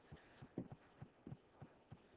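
Near silence with faint, soft taps, three or four a second, of a stylus tapping on a pen tablet while writing ink into a Word document that keeps failing to take the strokes.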